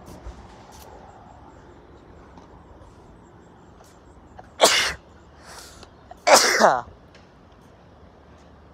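A man sneezing twice, short loud bursts about four and a half and six and a half seconds in, the second falling in pitch; he puts them down to pollen season.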